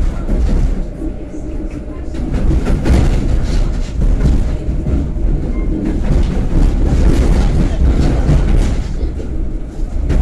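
Inside an EN57 electric multiple unit running at speed: a steady low rumble of wheels on rail, with a continuous irregular clatter as the wheels cross rail joints and points.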